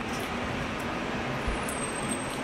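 Steady road-traffic noise from vehicles at a kerbside, with a soft low thump about one and a half seconds in.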